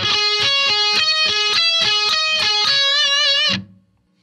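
Electric guitar playing an arpeggio as a quick run of single notes, ending on a held note shaken with vibrato that is cut off short about three and a half seconds in.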